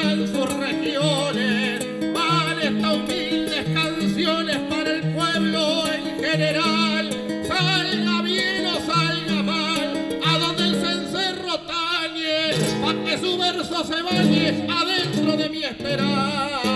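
Two acoustic guitars play an Argentine folk accompaniment with a steady alternating bass line, and a man sings over it. The music thins out briefly about twelve seconds in.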